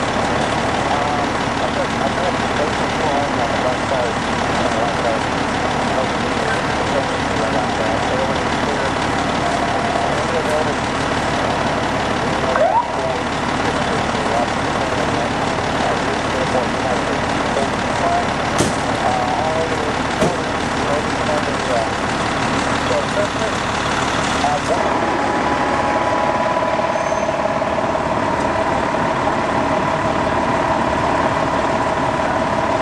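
An ambulance engine idling steadily, with unintelligible voices of people around it. About five seconds before the end a steadier hum joins in.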